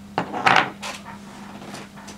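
Handling noise: a few light knocks and rustles, the loudest about half a second in, as small hard parts and the rig are handled on a tabletop. A faint steady hum runs underneath.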